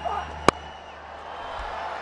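Cricket bat striking the ball once, a single sharp crack about half a second in, over steady background noise from the ground.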